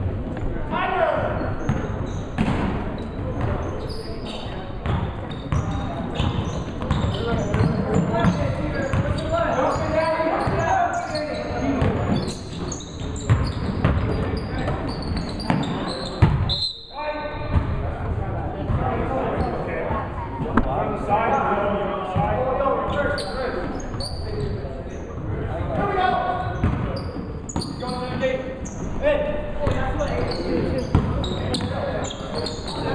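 Basketball bouncing on a hardwood gym floor during a game, mixed with indistinct shouts and chatter from players and spectators, all echoing in the large gymnasium.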